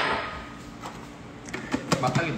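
A few short hard clicks and knocks from a plastic blender lid being fitted onto the jar, about one and a half seconds in. A single sharp knock comes right at the start.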